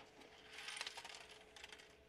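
Faint rattle and clicking of small LEGO pieces shifting in a 3D-printed plastic sorting tray as it is lifted off the tray below it.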